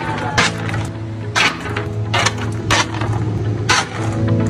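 Pieces of freshly cut hard candy cracking apart and clattering onto a table as they are scattered by hand, five sharp clatters about a second apart.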